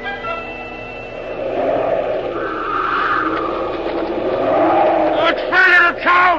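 Radio-drama wind sound effect for a sandstorm: a rising and falling whoosh of wind, with loud howling gusts that swoop up and down in pitch near the end.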